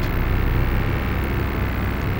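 A steady low droning rumble from an ambient background sound bed, unchanging throughout.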